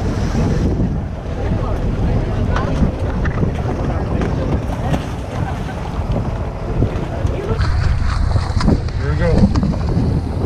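Wind buffeting the microphone in a steady low rumble over the wash of sea water around a boat.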